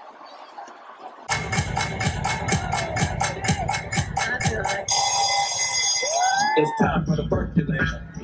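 Live arena concert music over the PA, picked up by a phone microphone. About a second in, a loud track kicks in with a fast, even beat. Around five seconds in, steady high electronic tones join, then gliding vocal lines and a heavy bass section.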